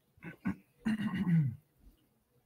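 A man coughing: two short coughs, then a longer one that drops in pitch.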